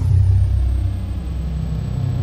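Loud, deep rumble that hits suddenly and then holds steady, with a faint high tone gliding down at its start: the low boom of a cinematic logo sting.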